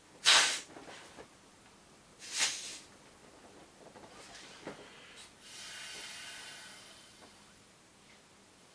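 Breath and air hissing as a vinyl inflatable pony is blown up by mouth: two short, loud, sharp breaths in the first three seconds, then a softer, longer rush of air from about five to seven seconds in.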